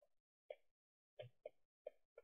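Near silence with four faint, soft clicks spread across two seconds.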